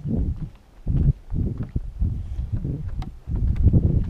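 Footsteps on weathered wooden dock planks: irregular heavy thuds about two a second, with a few sharp clicks.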